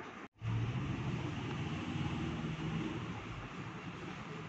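A steady low hum with hiss in the background, cutting out completely for a split second near the start and then resuming a little louder.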